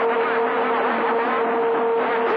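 CB radio receiving long-distance skip on channel 28: a steady, band-limited hiss and crackle of static with a steady low whistle running through it.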